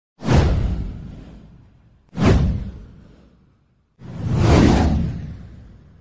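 Three whoosh sound effects, about two seconds apart, each coming in suddenly and fading away over a second or so; the third swells in more slowly.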